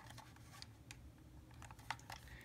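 Faint handling noise: a few small clicks and taps from the hard plastic case of a handheld tuner being turned over in the hands, the last one near the end the clearest.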